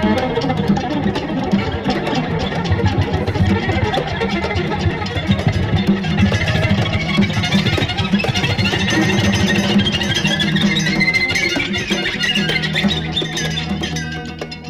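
Ukrainian psychedelic pop from the 1970s playing in a DJ set: a continuous instrumental passage with no singing.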